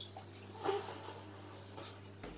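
Faint rubbing of a damp cloth against the face, with a small swell about two-thirds of a second in, over a low steady hum.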